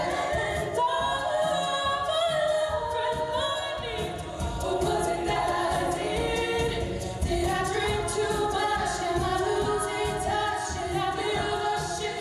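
Female a cappella group singing in harmony into microphones, several voices layered over a low vocal bass and rhythm line, with no instruments.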